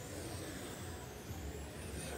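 Electric radio-controlled racing cars running laps on a carpet track: a steady hum with a faint high motor whine that wavers as the cars go by.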